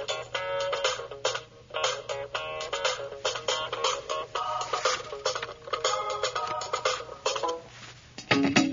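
Recorded music playing through a Dell Inspiron Mini netbook's tiny built-in speakers, thin and with almost no bass while the Logitech Z305 USB speaker is unplugged. The music dips briefly near the end.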